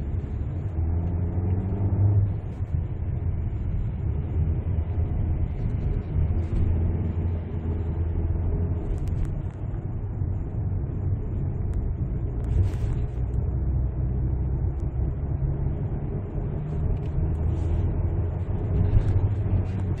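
Cabin noise of a Ford Explorer with its 2.3-litre turbocharged four-cylinder petrol engine under way on the road: a steady low rumble of engine and tyres, with the engine's hum shifting slightly in pitch as it pulls.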